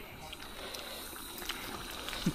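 Faint, steady outdoor background hiss with a few light clicks.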